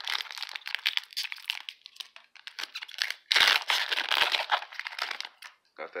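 Foil wrapper of a Magic: The Gathering booster pack being torn open and crinkled in the hands. It comes as two spells of crackling, the second starting about three seconds in.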